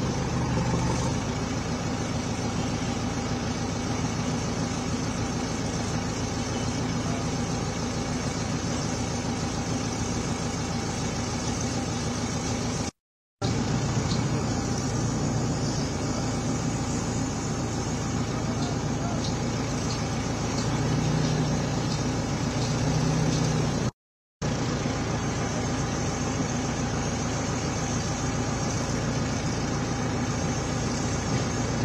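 Engines of construction-site machinery idling steadily, a continuous low hum. The sound cuts out briefly twice.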